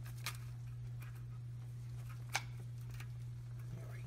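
Two faint clicks, one just after the start and one a little past the middle, as a timing chain and its guide are worked into place by hand on the engine, over a steady low hum.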